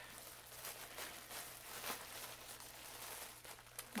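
A clear plastic bag and the paper yarn ball bands inside it crinkling and rustling as a hand rummages through them, with many small irregular crackles.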